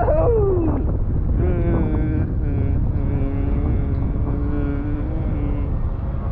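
Wind buffeting the microphone, with a man's voice: a short falling sound at the start, then a long held "mmm" hum for about four seconds while he tastes raw sea lettuce.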